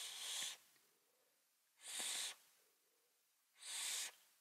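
Short breathy hisses of air drawn through a Wotofo Troll dripping atomizer as the vape is puffed: three hisses about two seconds apart, the first already under way and the last running past the end.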